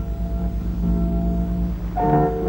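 Soundtrack music over title cards: held notes ringing on, with a steady low hum underneath.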